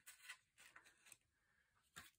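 Faint paper rustling and a few soft clicks from a handheld plastic hole punch pressed through a planner page to punch a single missing hole, then lifted off.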